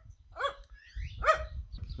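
Small dog giving two short, high-pitched barks, about half a second and a second and a quarter in.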